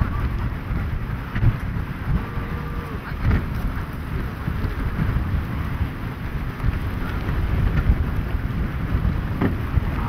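Wind buffeting the camera microphone in gusts, heard as a rough low rumbling noise.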